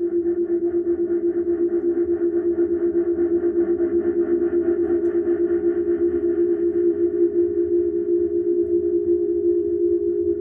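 Experimental noise music: a sustained electronic drone held on one low-mid pitch, pulsing rapidly and evenly at about six beats a second, with a distorted, echoing haze above it.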